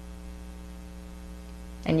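Steady electrical hum with a ladder of overtones, running under a pause in speech; a woman's voice starts again near the end.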